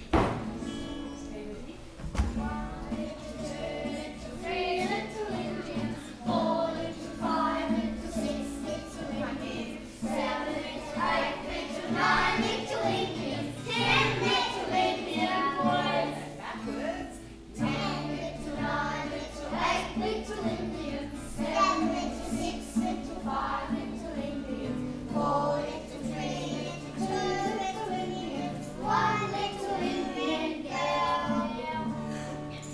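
A group of young children singing a song together, accompanied by a strummed acoustic guitar. A sharp knock sounds at the very start.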